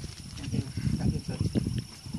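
Wind buffeting the phone's microphone in irregular low rumbles and gusts.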